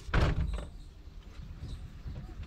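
A car door shutting with a single heavy thud just after the start, fading within about half a second; it is the door of an old 2004 Mahindra Bolero, heard from inside the cabin.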